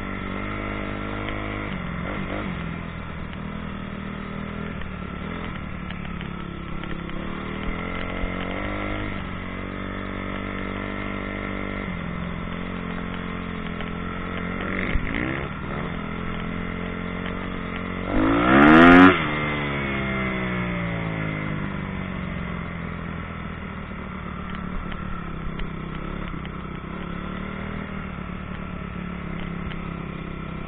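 Single-cylinder four-stroke motocross bike running steadily at low throttle, with a short blip of the throttle about halfway through and a sharp rev that rises and falls about two-thirds of the way through, the loudest moment.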